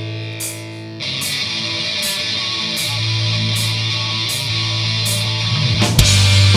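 Live hard rock band playing an instrumental passage. A held electric guitar chord rings out, then about a second in the distorted guitars, bass guitar and drums come in together, with a cymbal struck steadily about every three quarters of a second. The band hits harder right at the end.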